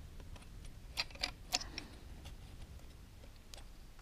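Faint, light clicks of metal clutch parts (basket, plates and hub) being handled by hand in the open clutch of a KTM SX 125 two-stroke: several in the first half and one more near the end.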